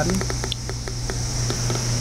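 Geiger counter's audio clicking at irregular intervals, several clicks a second, each click one detected radiation count.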